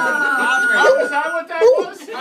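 Several people's voices talking and laughing over a single steady whistle note held by a party whistle; the whistle cuts off about one and a half seconds in.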